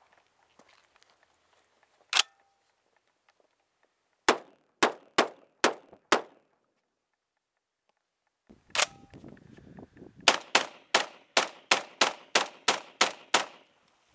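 BR99 semi-automatic 12-gauge shotgun firing in strings. One shot comes about two seconds in, then five in quick succession at about two a second. After another single shot, a rapid string of about ten shots follows at about three a second.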